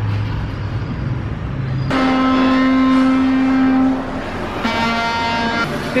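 Street traffic rumbling, then two long steady vehicle horn honks: the first about two seconds in, lasting about two seconds, and a second, slightly lower one near the end.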